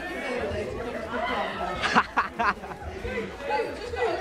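Several voices chattering indistinctly, with a few short sharp sounds about two seconds in.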